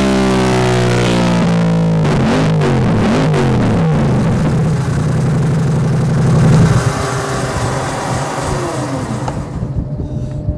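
Yamaha R7's 689 cc parallel-twin engine, breathing through open pod filters and a Yoshimura full exhaust, running hard on a dyno: it holds a steady pitch, sweeps down and back up about two to four seconds in, climbs to its loudest about six and a half seconds in, then backs off and winds down near the end.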